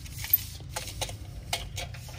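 Steel tape measure being drawn out along a pine board: a string of sharp, irregular clicks and ticks as the blade pays out from its case.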